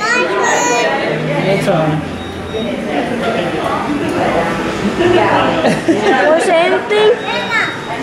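Indistinct children's voices and chatter fill a busy restaurant dining room.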